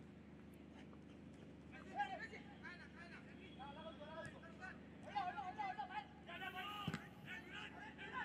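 Faint voices on a football ground, shouts and talk from players and spectators, over a low steady hum, with one sharp knock about seven seconds in.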